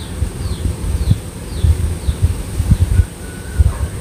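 Dried snakeskin gourami shallow-frying in a little hot oil in a pan, sizzling and bubbling, the fish fried golden and nearly done. Under it runs an uneven low rumble that surges irregularly.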